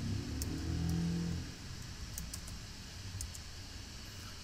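Computer keyboard keystrokes, a few scattered clicks as a date is typed in, with a low hum underneath in the first second and a half.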